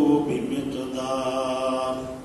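A man's voice reciting a Quranic verse in a melodic chant, ending on one long held note that breaks off near the end.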